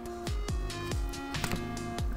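Background electronic music with a steady beat and held tones.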